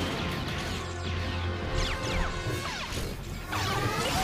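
Animated sci-fi battle soundtrack: music under crashing impacts and blaster-fire effects, with falling whistle-like sweeps about halfway through and again near the end.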